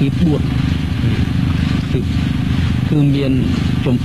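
A man's voice talking in short phrases over a steady low hum, with the talking resuming strongly about three seconds in.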